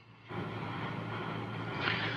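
Steady mechanical hum with a hiss, starting abruptly a moment in.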